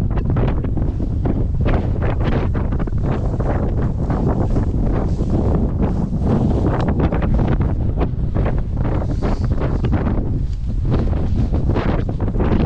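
Strong wind buffeting the camera's microphone in a steady, loud low rumble. Tall dry grass brushes and swishes as people walk through it.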